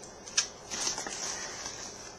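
Crinkling of a small clear plastic bag of beads being handled, with a single sharp click about half a second in.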